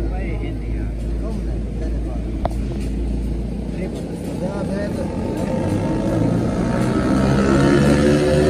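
Men talking over a steady low rumble of a motor vehicle engine, which grows louder with a slowly rising pitch near the end.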